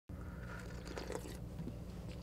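Quiet room tone with a steady low hum, and a few faint rustles and small clicks about a second in, as of someone settling behind a drum.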